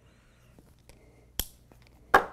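Quiet puffing on a tobacco pipe, with a few faint ticks and one sharp click about one and a half seconds in.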